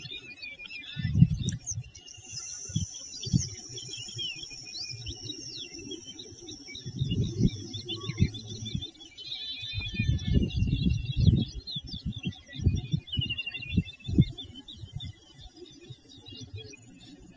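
Small birds chirping and trilling continuously, with low gusts of wind rumbling on the microphone every few seconds.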